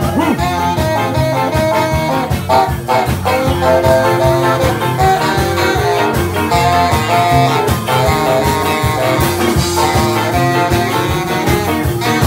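Live band playing loud ska: a saxophone section holds the melody over electric guitars, bass and drums with a steady beat.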